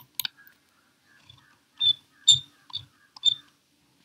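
A handful of short, sharp clicks, about five of them spread unevenly over the few seconds.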